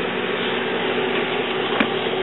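Steady background hum and hiss with a few low steady tones, and one light click near the end.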